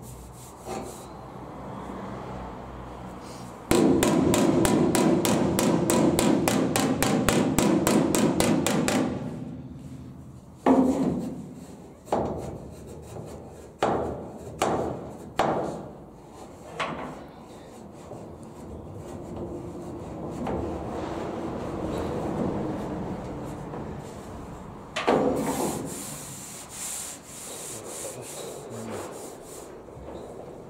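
Rubbing strokes by hand across the bare steel of a welded-in wheel-arch repair panel. A run of fast, even back-and-forth strokes lasts about five seconds, then comes a string of slower single strokes, and another short run near the end.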